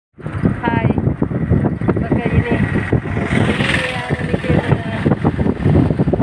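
Steady road and engine rumble of a moving car heard from inside the cabin, with a voice over it.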